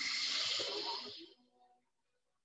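A woman's long audible exhale through the mouth, a breathy rush of air that fades out after about a second and a half. It is the breath out on the effort of a Pilates abdominal curl.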